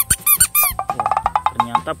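Green rubber squeaky frog toy being squeezed: several short squeaks that arch up and down in pitch, then a longer, rapidly pulsing squeak in the second half.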